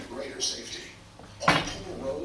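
A single loud, sharp clatter of a hard object about one and a half seconds in, ringing briefly, over people talking in the room.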